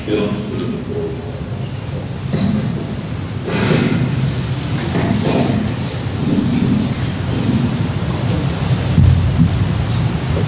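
Indistinct murmuring of voices over a steady low rumble, with a few louder bursts of voice about three and a half and five seconds in.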